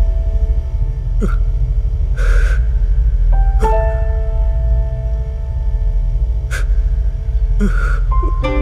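Background film score: a steady deep drone with held keyboard-like chords, a new chord coming in about three and a half seconds in. Two short breath-like gasps, one about two seconds in and one near the end.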